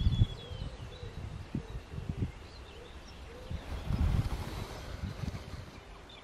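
Faint birdsong, a few thin chirps and a short falling whistle, over irregular low gusts of wind buffeting the microphone, which are the loudest sound.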